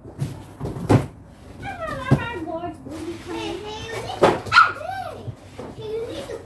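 Young children's high-pitched voices, rising and falling, with a few sharp knocks about one, two and four seconds in.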